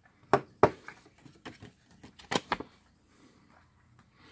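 Handling noise: the screwdriver being set down on the bench and a folded paper instruction leaflet being picked up and opened. There are two sharp clacks in the first second, softer rustling, then two more sharp clacks just after two seconds.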